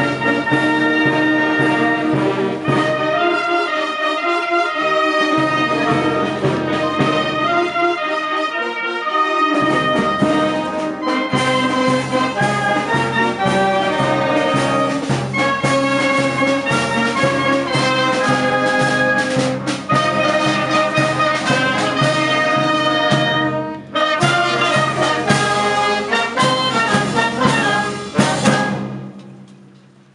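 Alpini brass band with parade drums playing a march, the brass carrying the tune over a steady drum beat. There is a brief break about three-quarters of the way through, and the music stops about a second before the end.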